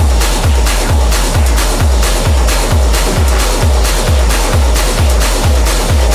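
Hard techno track: a deep four-on-the-floor kick drum, about two beats a second, under a dense, noisy layer of synths and percussion.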